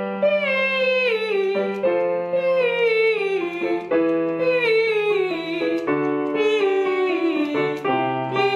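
A woman singing a descending head-voice warm-up over piano chords: each phrase slides downward, and the pattern repeats about four times, a step lower each time.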